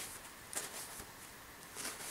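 Faint rustling of kitchen paper towel rubbed over a knife blade to wipe it, with two brief rustles, about half a second in and near the end.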